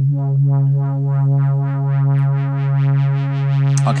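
Shaper iOS synthesizer app playing its 'Evolving Oscillation' pad preset: one held low C3 note from a sawtooth oscillator. Its brightness pulses about four times a second as the filter sweeps.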